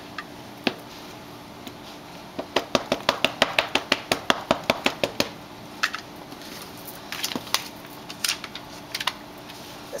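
A quick run of light taps, about five a second for nearly three seconds, then a few scattered clicks: a rubber cling stamp and its clear plastic carrier sheet being handled on a tabletop.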